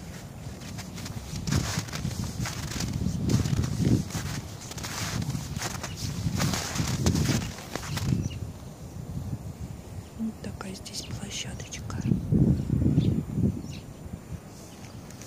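Footsteps crunching in snow as someone walks, an uneven run of soft thuds with a crisp crunch on top.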